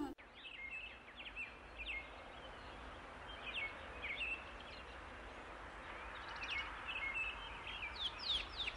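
Birds chirping faintly: short, high chirps come in scattered clusters over a steady background hiss.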